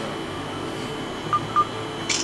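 Two short, same-pitched electronic beeps from a smartphone's camera app, about a quarter second apart, as it locks focus on a face. They sound over a steady background hum.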